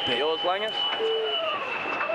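Men's voices talking, over a steady high-pitched whine.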